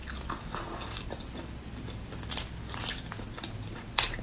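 Raw marinated shrimp peeled by hand close to the microphone: small wet crackles and clicks of the shell coming away from the flesh, with two sharper snaps about two and a half and three seconds in.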